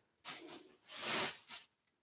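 Clothing being handled, rustling in two short bursts in the first second and a half.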